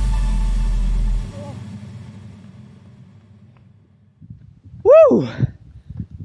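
Electronic background music ending on a low falling sweep, then fading away over a few seconds. Near the end comes a single loud voice call that rises and falls in pitch.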